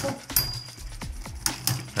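Two Beyblade spinning tops whirring in a plastic stadium, with a run of sharp clicks and clacks as they knock against each other and the stadium.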